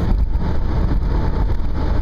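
Steady road and engine rumble inside a car cruising at highway speed, deep and even throughout.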